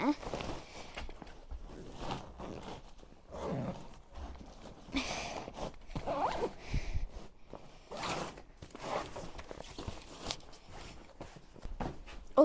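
A fabric holdall being packed by hand: rustling and knocking of things going into the bag, with a zip being pulled along it.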